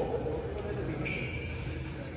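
A high, steady squeak about a second in, lasting nearly a second, typical of a badminton shoe sole dragging on the synthetic court mat, over voices chattering in a large hall.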